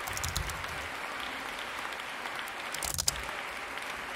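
A concert hall audience applauding steadily, heard from a choir concert recording being played back at a turned-down level.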